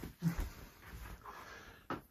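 A brief low grunt from a man a quarter of a second in, then quiet room noise, with a sharp click near the end.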